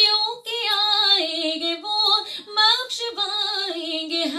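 A woman singing a naat, an Urdu devotional song, solo. Her single voice holds long notes that bend and glide in ornamented runs, with short breaths between phrases and no instruments.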